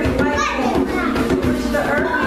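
A group of voices singing and calling out together, many overlapping, over the beat of a hand drum.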